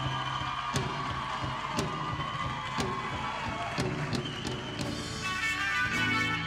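Live band music with drum kit and electric guitar: a sparser passage with a sharp stroke about once a second, the full band coming back in about five seconds in.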